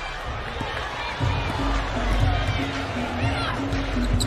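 Arena crowd noise during live play in a basketball broadcast, with in-arena music in the background; a repeated low note starts about a second in.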